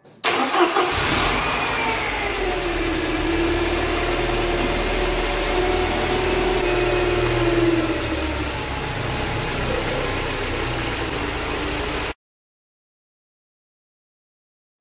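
A Mercedes KE-Jetronic petrol engine starting. It flares briefly, then settles into a steady idle, and the sound cuts off abruptly about twelve seconds in.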